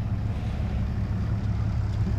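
A steady low rumble of an idling engine, unbroken and even in level.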